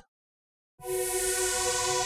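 Software synthesizer playing a sustained chord of long held notes, starting a little under a second in, with a bright, hissy top.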